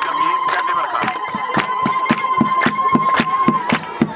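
A crowd clapping in a steady rhythm, about four claps a second, over a single held high tone that stops about three and a half seconds in.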